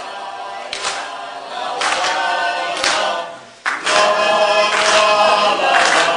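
A choir of several voices singing together in sustained lines, growing louder in the second half.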